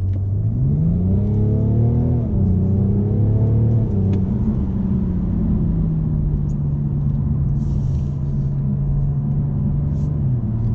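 BMW M550d's quad-turbo 3.0-litre straight-six diesel heard from inside the cabin under acceleration. The engine note climbs, drops sharply about two seconds in at an upshift, pulls on, then slowly falls to a steady drone as the car eases off.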